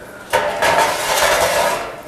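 Metal oven door of a range being pulled open, a scraping, rattling metallic noise lasting about a second and a half.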